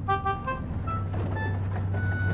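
Diesel shunting engine running with a steady low rumble, giving a couple of short horn toots at the start.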